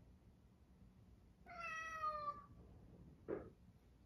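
A domestic cat meows once, a single call about a second long that falls slightly in pitch. About a second after the meow comes a brief, short sound.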